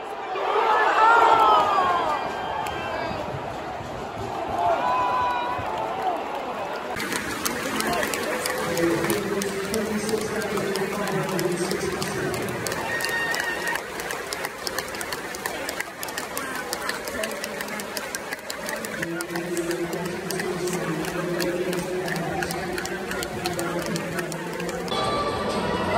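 Football fans chanting with voices gliding up and down; from about seven seconds in, close-by fans singing long held notes over steady hand-clapping.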